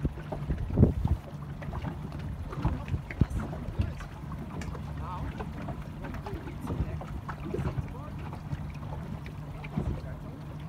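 Wind buffeting the microphone and water lapping against the hull of the filming boat, over a low steady hum, with scattered knocks, the loudest about a second in.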